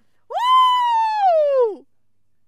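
One long, high-pitched whining cry from a person's voice, starting about a third of a second in and sliding slowly down in pitch before it stops near the end.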